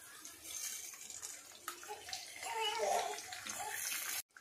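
Shallots and green chillies sizzling in hot oil in a kadai, the sizzle getting louder in the second half as a raw egg is cracked into the oil.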